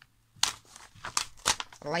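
A large sheet of ledger paper being handled and lifted, crackling sharply about four times.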